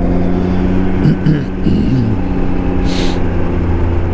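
Can-Am Ryker 900's three-cylinder Rotax engine running at a steady cruise, its pitch holding even, with wind noise rumbling on the microphone. A short hiss comes about three seconds in.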